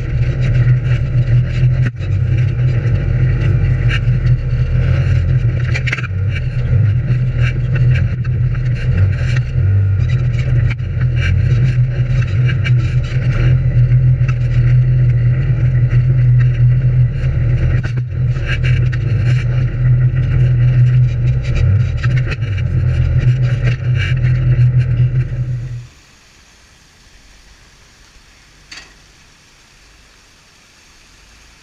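An off-road vehicle's engine running steadily while driving, with many short knocks and rattles over it. It cuts off suddenly near the end, leaving only a faint hiss.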